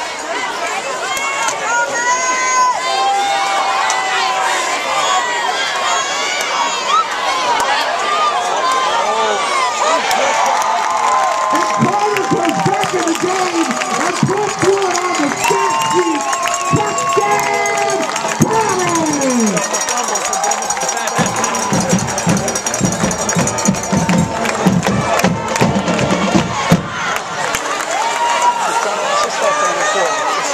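Football stadium crowd cheering and shouting, many voices overlapping, louder and more excited midway through.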